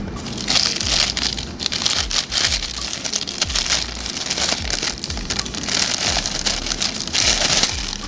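Paper and clear plastic packaging crinkling and rustling as a boxed eyeshadow palette is unwrapped, in repeated bursts that are loudest about a second in and again near the end.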